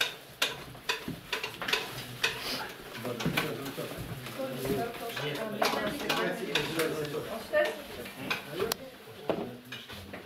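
Dishes and cutlery clinking in short sharp clicks, with several people talking at once in a small room.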